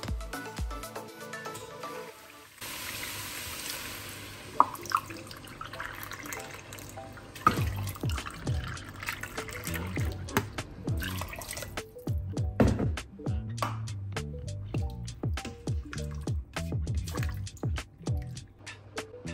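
Water running from a kitchen tap for about five seconds over background music, followed by a run of sharp clicks and knocks.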